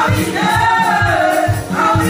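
Gospel praise-and-worship singing by a female lead singer and a backing choir, amplified through microphones and a PA, with long held notes over a steady beat.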